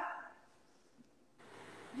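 The last of a spoken word fading out, then near silence: room tone over a video-call microphone, with one faint click about a second in.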